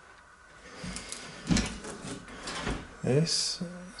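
A cupboard door being opened, with clicks and rubbing as it swings open, followed by a man's voice in the last second.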